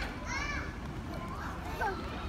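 Young children's voices at a playground: short high-pitched vocalisations and squeals, over a steady low background hum.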